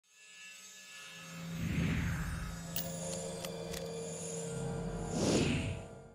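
Intro logo sting of music and sound effects: a deep sustained drone with a whoosh swelling about two seconds in, a few sharp ticks, and a second whoosh near the end before it fades out.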